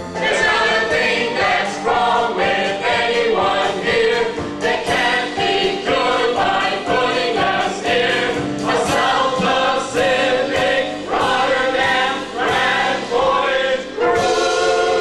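A group of voices singing a song together into microphones, with musical accompaniment, in an ensemble chorus.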